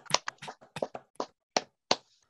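Hand claps heard over a video call: a run of sharp, separate claps, about four a second at first, spacing out and thinning near the end.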